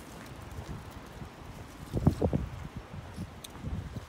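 Footsteps of a person walking on outdoor ground, with rustling from the hand-held phone. A short louder cluster of sounds comes about halfway through.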